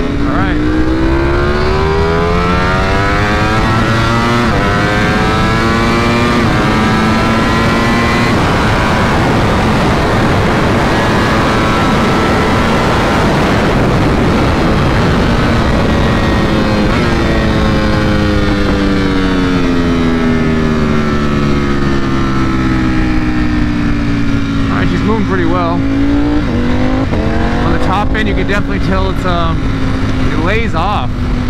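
2021 Ducati Panigale V4 SP's V4 engine on stock factory tuning, heard from the rider's seat under hard riding. It climbs in pitch through the gears over the first several seconds, is half buried in wind rush at speed around the middle, then falls in one long slow glide as the bike slows, with a few short rises in pitch near the end.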